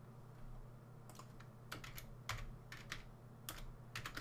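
Computer keyboard being typed: a handful of faint, separate keystrokes, starting about a second in.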